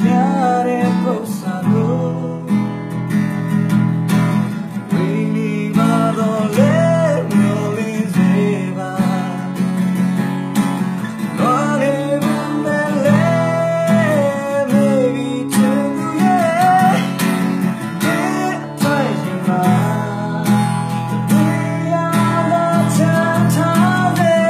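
A man singing to his own strummed acoustic guitar, in continuous phrases over steady chords.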